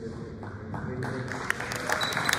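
Crowd applause starting up and building through the second half, with voices talking underneath.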